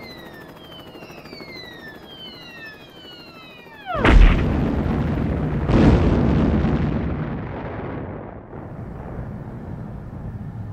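Cartoon sound effect of a falling bomb: several whistles sliding down in pitch, ending about four seconds in with a loud explosion. A second blast follows nearly two seconds later, then a long rumble that fades away.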